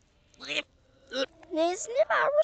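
A few short wordless vocal sounds from cartoon characters' voices, the last one rising in pitch.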